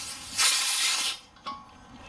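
Trapped propane hissing out as the torch hose's brass fitting is unscrewed from a closed 20-pound propane tank valve: a high hiss that swells about half a second in and cuts off just over a second in. A light click follows.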